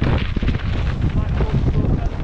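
Wind rushing over a helmet-mounted action camera's microphone, mixed with the steady rumble and rattling knocks of a Scott Gambler downhill mountain bike ridden fast over a rough dirt and rock trail.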